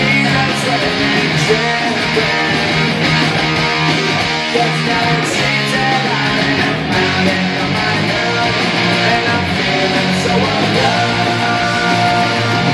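Epiphone Les Paul 100 solid-body electric guitar strummed with a pick, playing steady rhythmic chords.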